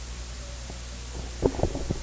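A pause in speech filled by a steady low electrical hum from the microphone and sound system, with a few soft clicks about one and a half seconds in.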